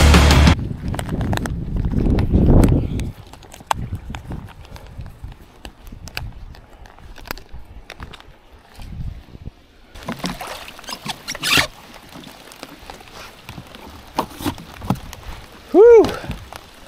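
Intro music cutting off about half a second in, followed by small clicks, knocks and rustles of gear being handled on a plastic fishing kayak, with a faint steady hiss from about two-thirds of the way through.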